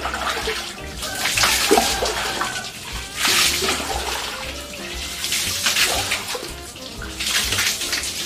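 Water poured from a dipper over a bather's head and body, splashing down four times about two seconds apart, with background music underneath.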